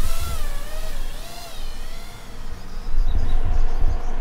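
FPV quadcopter's motors whining in flight, the pitch wavering up and down with throttle and fading out after about two and a half seconds, over a low rumble.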